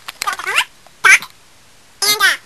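A few short, high-pitched, meow-like cries in quick succession in the first second or so, each bending in pitch.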